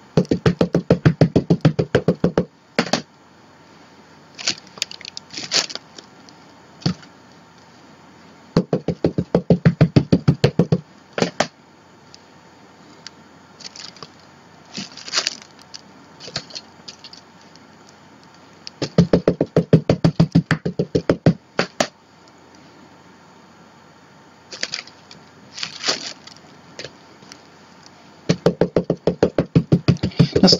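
An archival ink pad tapped rapidly against a rubber stamp to re-ink it, in four runs of quick taps, about ten a second and a couple of seconds each. Scattered single knocks come between the runs as the stamp is pressed onto the journal page.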